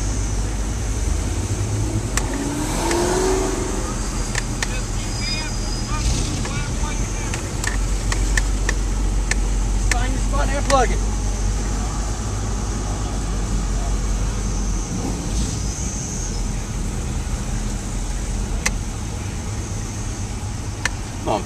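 A car engine running at idle as the car creeps along in slow traffic: a steady low rumble, with indistinct voices around it.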